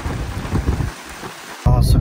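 Heavy rain pouring down in a steady hiss, with a low rumble under it in the first second. It cuts off abruptly near the end.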